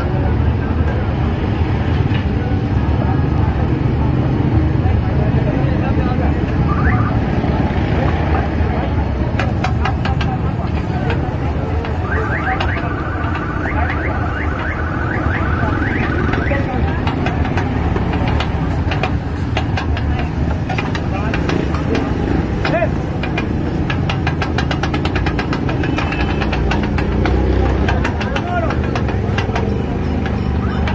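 Metal spatula clicking and scraping rapidly against a large flat iron griddle (tawa) as minced mutton is chopped on it, starting about a third of the way in. Underneath runs steady street noise of traffic and voices.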